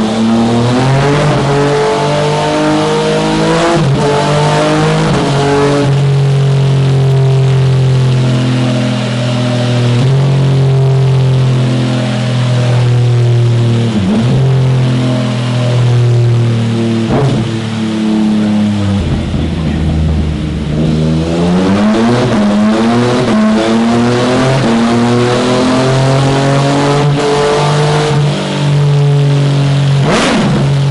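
Yamaha MT-09's remapped three-cylinder engine running on a dynamometer roller, its revs climbing and then dropping sharply, over and over, as it is shifted up through the gears. The quickshifter cuts the ignition at each change so the gears go in without the clutch. About two-thirds of the way through, the revs fall away, then climb again through a few more shifts.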